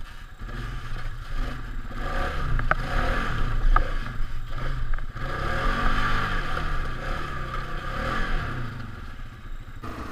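Polaris Sportsman 570 ATV's single-cylinder engine pulling the quad up out of a creek onto a trail, getting louder about two seconds in, its revs rising and falling. There are two sharp knocks about three and four seconds in, and brush scrapes against the machine.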